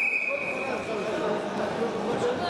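Referee's whistle: one steady blast of about a second, starting sharply and then fading, signalling the start of the freestyle wrestling bout. A hall full of voices murmurs underneath.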